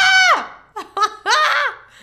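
A woman's high-pitched shriek of surprise ("oh!") that breaks off about half a second in, followed by a short burst of laughter.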